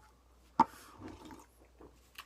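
A single sharp click a little over half a second in, followed by faint scattered handling sounds.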